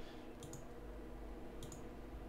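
A few faint computer mouse clicks, in two small groups about half a second in and near the end, over a steady low room hum.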